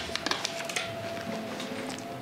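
Light paper rustling and a few soft clicks as a sticky note is handled and pressed onto a cork board, over a faint steady hum.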